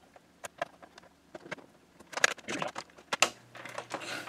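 Screwdriver clicking against the plastic back casing of a Dell LCD monitor as its screws are backed out: a few sharp single clicks, then a quicker run of clicks and rattles from about two seconds in.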